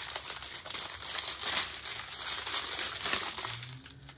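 Small plastic bags of diamond-painting rhinestone drills crinkling and rustling as they are handled and sorted, in uneven bursts.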